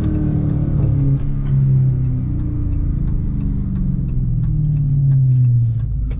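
Dodge Charger Scat Pack's 6.4-litre HEMI V8 heard from inside the cabin while the car drives along. It is a low steady drone whose pitch dips about a second and a half in, climbs slowly, then drops near the end.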